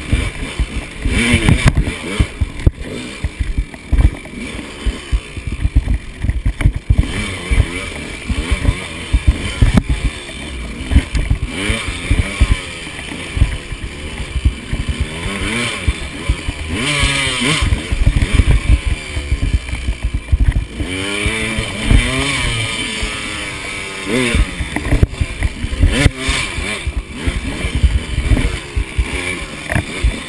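KTM 200 XC two-stroke dirt bike engine revving up and down again and again as it is ridden over rough trail, heard close through a helmet camera. Frequent thumps come from the bike jolting over rocks and roots.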